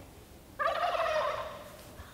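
An imitation turkey gobble blown on a mouth turkey call: one warbling, rattling call about a second long, starting about half a second in.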